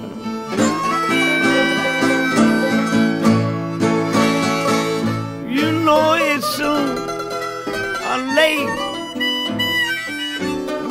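Acoustic country blues band playing an instrumental passage between sung lines: guitars picking and strumming, with harmonica bending notes around the middle and again near the end.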